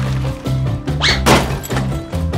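Background music with a steady beat, and about a second in a single sharp thunk as a battery-powered TrackMaster plastic toy engine derails and tips over onto its side.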